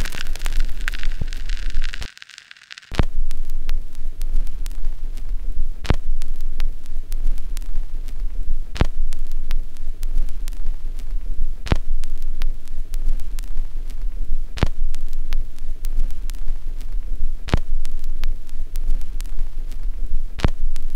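Outro sound design: a deep, steady bass drone with a sharp hit about every three seconds, like a slow heartbeat. It follows a hissing rush of noise in the first two seconds that cuts out briefly.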